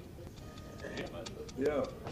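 A short stretch of voice near the end, with several light, sharp clicks scattered through the second half; no music playing.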